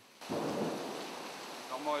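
Thunder rumbling over heavy rain, starting suddenly about a quarter second in and loudest at first, then easing into a steady rain hiss.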